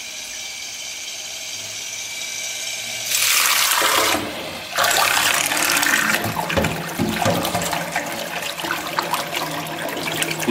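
Small electric underwater thruster running, a steady whir at first, then lowered into a sink of water about three seconds in with a loud rush of water. It then runs submerged, churning the water continuously.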